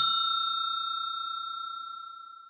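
A single bell-like chime of a logo sting, struck once and ringing on in one clear tone that slowly fades away.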